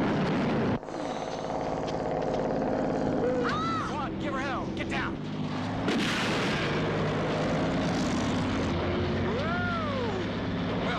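Heavy diesel engine of a Kenworth K-100 car-hauler truck running hard as it drives past. About six seconds in comes a sharp bang from a gun being fired, and short rising-and-falling squeals come twice.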